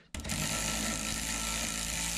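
Cordless electric ratchet running steadily, spinning down the nut on a sway bar end link at the coilover's mount. It starts just after the beginning and keeps running without a break.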